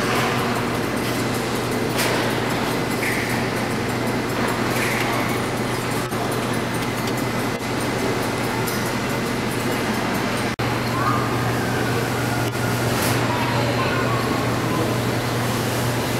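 Busy indoor public-hall ambience: a dense wash of distant visitors' voices and exhibit noise over a steady low hum, broken by a brief dropout about ten and a half seconds in.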